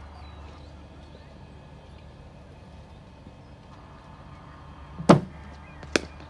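A steady low hum, then a loud thump about five seconds in as the bowling machine fires a ball. Under a second later comes the sharp click of the bat meeting the ball in a defensive shot.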